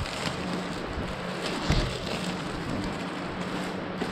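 Clear plastic shrink-wrap crinkling and crackling as it is peeled and pulled off a cardboard box, with a louder crackle a little under two seconds in.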